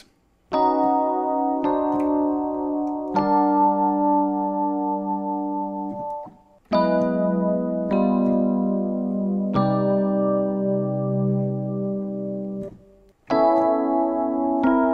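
Digital keyboard with an electric piano tone playing a three-chord progression, transposed to a new key each time. The pattern is a major ninth chord over a bass note, then an augmented dominant seventh with a flat ninth, then a long-held minor ninth chord with a major seventh as the resolution. It plays twice with a short pause between, and a third pass starts near the end.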